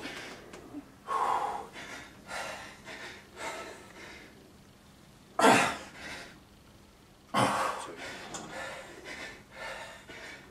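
A man breathing hard as he strains through slow, heavy seated rows: short forceful exhalations and gasps about once a second, the two loudest about five and a half and seven and a half seconds in.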